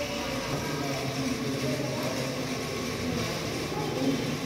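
Indistinct background voices of people over a steady hum.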